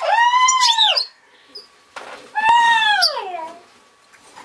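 Two loud, drawn-out animal calls, about a second each. Each rises a little, holds, then slides down in pitch. A single sharp click falls between them.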